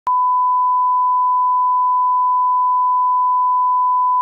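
Steady 1 kHz line-up tone, a single pure pitch held unchanged without a break: the reference tone that accompanies a countdown slate for setting audio levels.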